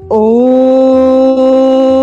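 A woman chanting one long, steady Om, the closing chant of a yoga practice. It starts abruptly just after the opening with a slight upward slide, then holds one pitch.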